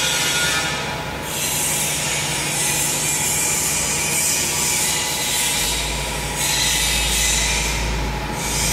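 Tissue-paper converting machines (napkin and facial-tissue folding machines) running, a steady dense mechanical noise with a constant hum. A low rumble joins about two-thirds of the way through.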